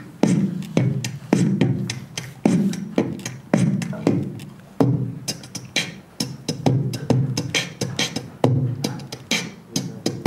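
Vocal beatboxing into a handheld microphone: a steady beat of deep kick-drum thumps about once a second, with snare and hi-hat sounds made with the mouth in between.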